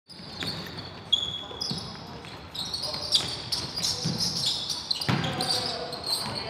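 Basketball game on a wooden gym floor: the ball bouncing several times, with many short, high sneaker squeaks as players cut and stop.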